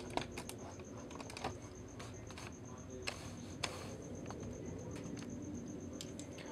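Quiet, irregular plastic clicks and taps from a Transformers Generations Deluxe Orion Pax action figure being handled as its hinged tire and cab panels are swung around during transformation.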